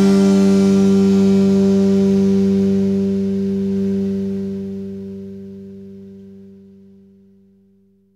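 The last chord of an indie rock song, held on guitar and left to ring out. It slowly dies away, its higher notes fading first, and is gone by the end.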